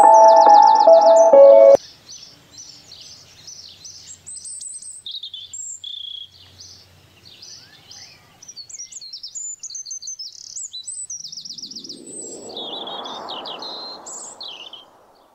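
Sustained ambient music cuts off suddenly about two seconds in, leaving small birds chirping and trilling high and rapidly. Near the end a soft rushing noise swells up and fades away.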